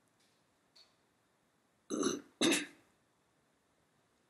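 A person makes two short throat sounds, like a cough or a throat-clear, in quick succession about two seconds in, against near-silent room tone.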